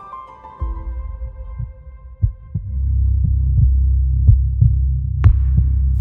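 Soundtrack music for the title sequence: a melody of held notes fades out, and a low droning bass swells up under it. Over the bass comes a soft double beat about once a second, like a heartbeat.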